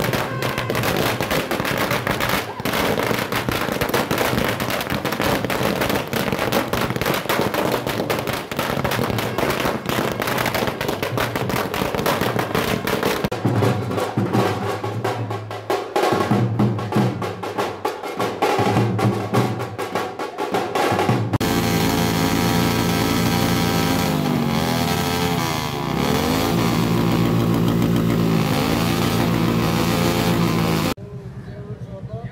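A long string of firecrackers going off in rapid, dense cracks for the first half, with drumming coming in partway through. After about two-thirds of the way, the cracks stop and steady music with sliding melody lines takes over.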